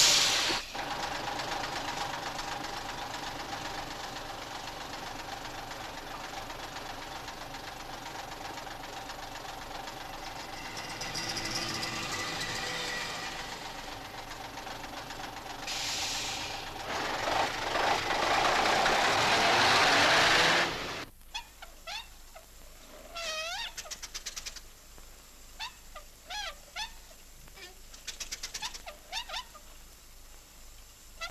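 A steady mechanical noise, as of a vehicle or train, that swells and then cuts off suddenly about two-thirds of the way through. After it, quiet with scattered short chirping calls.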